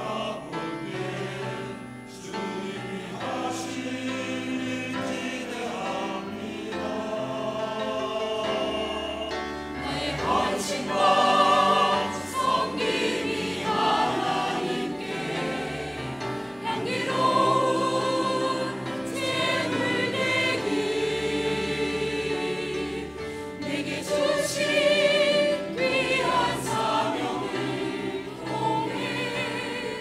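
Mixed choir of men's and women's voices singing a Korean sacred anthem in parts with piano accompaniment; the singing swells louder at a few points.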